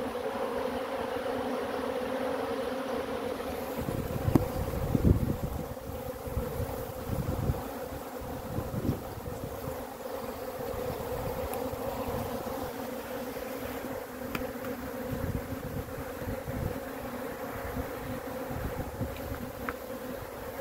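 A large number of honeybees buzzing together in a steady hum, from bees crowded on cut-out comb and flying around it. A few low bumps on the microphone come between about four and nine seconds in.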